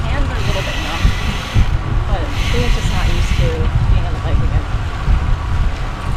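Wind buffeting the microphone of an action camera on a moving road bike, a constant low rumble with a rushing hiss, with faint snatches of voices underneath.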